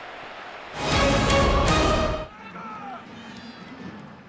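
A short, loud burst of music from the broadcast's logo transition sting, lasting about a second and a half and starting just under a second in. Before and after it, a lower steady wash of stadium crowd noise.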